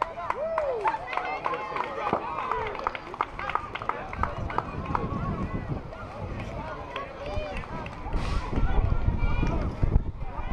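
Indistinct chatter of several people talking and calling out at once, with a few sharp clicks. A low rumble comes in about four seconds in and is loudest near the end.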